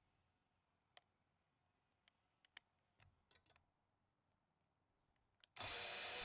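Near silence with a few faint, isolated clicks. About half a second before the end, a steady hiss comes in suddenly.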